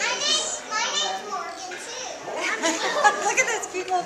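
A group of young girls chattering over one another in high voices.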